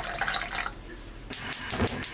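Water pouring and splashing into a small stainless steel saucepan over garlic cloves, stopping under a second in. Near the end, a quick run of sharp clicks as the gas burner under the pot is lit.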